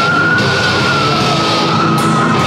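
Goregrind band playing live: a dense wall of distorted guitar and drums, with a long high held tone sliding slowly down in pitch over it.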